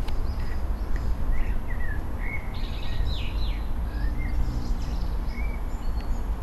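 Small birds chirping and warbling in short phrases, busiest about two to three seconds in, over a steady low outdoor rumble. A couple of sharp clicks sound right at the start.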